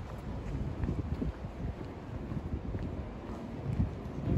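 Wind buffeting the microphone: an irregular low rumble that flutters up and down.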